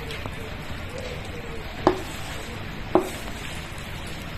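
Wooden spatula pushing saucy sweet-and-sour vegetables out of a wok onto fish in a ceramic dish, with two sharp knocks about two and three seconds in.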